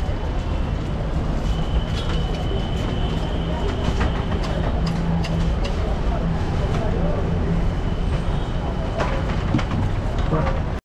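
Busy street ambience: a steady low engine rumble of traffic with background voices and scattered clicks.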